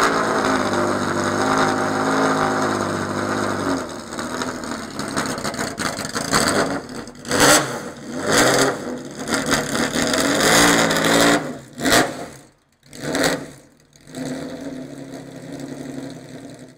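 Ford Supervan 3's racing engine idling steadily, then revved in a series of about five or six short, sharp throttle blips that fall back each time, ending quieter near the end.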